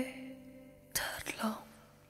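In the gap between two songs, a sound dies away at the start, then a brief whisper comes about a second in, and then all goes nearly quiet.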